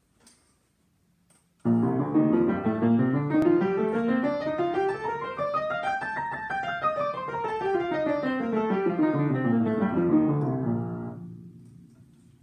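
Upright piano played: about two seconds in, a steady run of notes climbs evenly up the keyboard for about four seconds, like a scale, then comes straight back down. It stops about a second before the end, and the last notes fade out.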